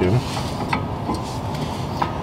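BMW F30 front sliding brake caliper being worked back into position over new pads by hand, with a few light metal clicks and scrapes over a steady low hum in the background.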